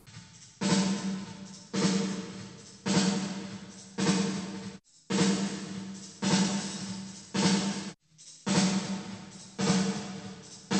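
Recorded drum kit playing back a steady beat, one hit about every second, with the snare sent through a Lexicon 224 digital reverb emulation so each hit trails off in a long reverb tail. Partway through, mode enhancement is switched in, adding modulation and motion to the reverb tail.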